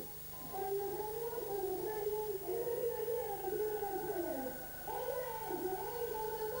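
A woman singing live into a stage microphone in long, slowly wavering held notes.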